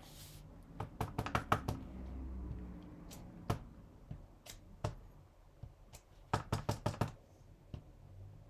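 Wooden-mounted rubber stamp knocking against the work surface in quick runs of taps: a cluster about a second in, single knocks in the middle, and another quick run near the end.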